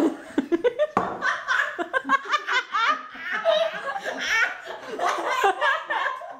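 Girls laughing hard in rapid, repeated bursts of giggles.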